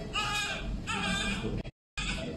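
Newborn baby crying: two wails in quick succession, then the sound cuts out abruptly shortly before the end.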